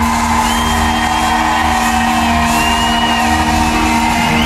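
Live band playing in a large hall: held chords sustained throughout, with a high gliding line bending above them, and whoops from the audience.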